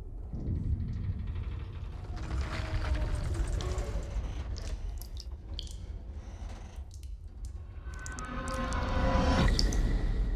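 Tense film sound design: a steady low rumble under held, wavering tones, with water dripping and scattered small ticks, building louder near the end.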